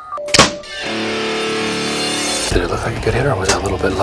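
Elite compound bow being shot: a single loud, sharp snap as the string is released, less than half a second in.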